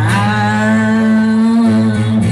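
A male singer holding one long sung note over the live band's acoustic guitar and bass, the pitch edging slightly upward before the note ends just before the close.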